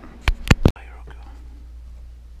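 Three sharp clicks in quick succession, then the sound cuts off abruptly and gives way to a low steady hum.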